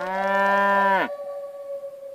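A cow mooing once: a single call that rises, holds steady and breaks off about a second in, over a lingering flute note that fades out.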